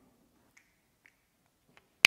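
Near silence with three faint, short clicks about half a second, a second and near two seconds in, from a whiteboard marker on the board and in the hand.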